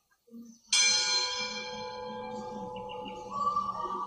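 Altar bell struck once at the elevation of the consecrated host, ringing with several clear tones that fade slowly. Another steady ringing tone joins about three seconds in.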